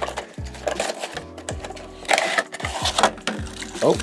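HeroClix booster pack being handled and opened by hand, with a run of rapid crinkling and clicking from the foil and plastic packaging.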